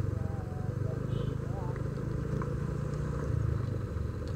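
Honda Vario 125 scooter's single-cylinder engine running steadily at low speed while riding along a rough dirt track, a low, even engine note.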